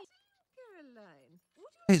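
A small dog whining in the film's soundtrack: one quiet, falling whine lasting under a second, about halfway through.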